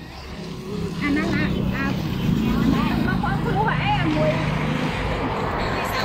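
A small motorbike engine running steadily, getting louder about a second in, with people talking over it.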